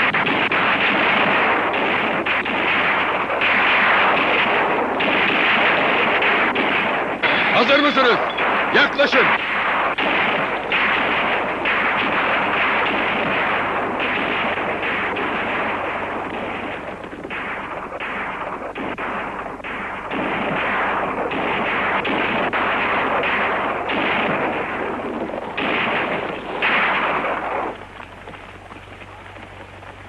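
Heavy, continuous gunfire from a film battle scene, with many rifle and pistol shots overlapping into a constant din. It drops away sharply near the end.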